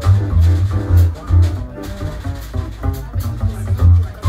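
Live jazz trio playing: an upright double bass plucks loud low notes, several a second, over piano chords and a drum kit's cymbal strokes.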